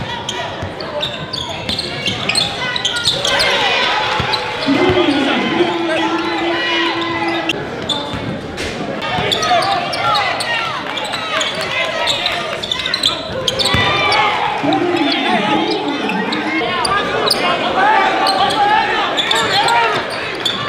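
Live basketball game sound in a gym: crowd and player voices, a basketball bouncing on the hardwood court, and sneakers squeaking on the floor.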